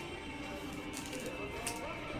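Soft background music with steady held tones. Over it come a couple of brief clicks and scrapes of a trading card being handled, about a second in and again near the end.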